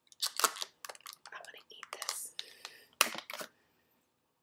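Plastic clamshell packs of Scentsy wax bars being handled: a quick run of clicks and crinkles, loudest at about half a second in and again at about three seconds.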